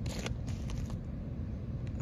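Foil jacket of a flex air duct crinkling and crackling as a probe thermometer is pushed into it: a few crackles in the first second and one more near the end, over a steady low rumble.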